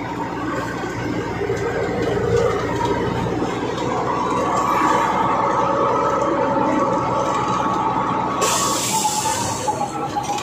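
Truck engine running steadily in the cab while the truck is driven, its pitch climbing a little a few seconds in and then holding. Near the end a short burst of hiss cuts in over the engine.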